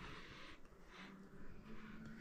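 Very quiet room tone with a faint steady low hum, and soft sniffing as a person smells perfume on his wrist.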